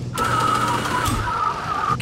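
Cartoon sound effect of an aeroplane's rear hatch opening: a steady mechanical whirr lasting almost two seconds, over the low drone of the plane's engine.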